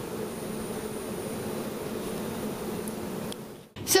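A steady low buzzing hum with hiss, like a running fan or appliance, that cuts off abruptly near the end.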